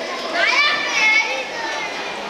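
A child's high-pitched voice calling out, starting about a third of a second in and lasting about a second, with pitch sliding up and down, over the background hubbub of a large hall.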